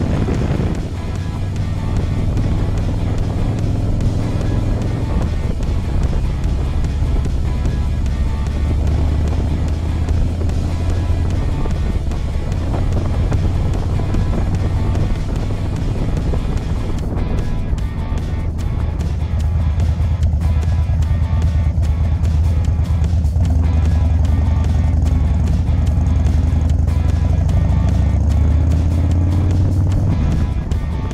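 Harley-Davidson FXDC Dyna Super Glide Custom's V-twin engine running steadily at cruising speed with wind noise, while music plays over it.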